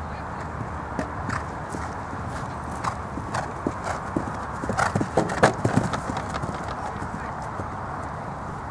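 A horse's hoofbeats as it canters on turf, loudest around the middle as it passes close by, then fading as it moves away.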